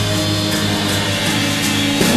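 Instrumental stretch of a rock band recording: guitars and held chords, with no singing.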